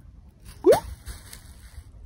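Homemade egg-drop package of egg carton, sticks, tape and plastic landing on the ground after a 10-foot fall: one short, loud impact at about two-thirds of a second, with a brief rising squeak at the moment of landing.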